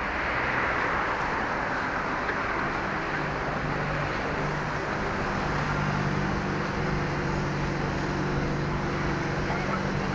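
Street traffic on a busy city avenue: a steady wash of car and road noise, with a low engine hum from idling vehicles coming in about three seconds in and holding. A brief knock sounds near the end.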